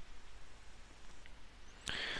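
Faint, quiet handling sounds of a thin stick prodding wet transfer paper on a circuit board in a shallow plastic tray of water, with one small click about a second in.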